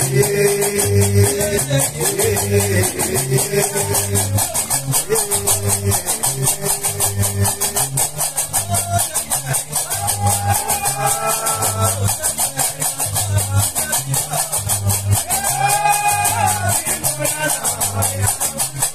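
Gnawa music: a guembri, the three-string bass lute, is plucked in a repeating bass figure under the steady, fast metallic clatter of qraqeb iron castanets. A man sings over them in stretches around the middle and again near the end.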